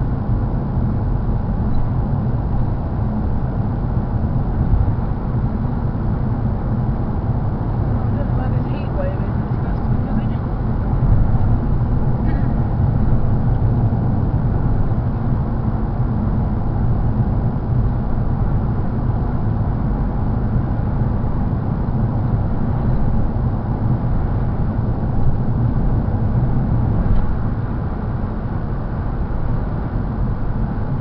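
Steady low rumble of a car's tyres and engine heard from inside the cabin while driving at road speed.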